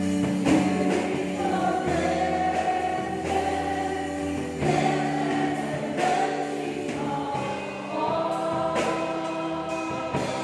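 Gospel-style worship music: a woman leads singing into a microphone, holding long notes over instrumental backing.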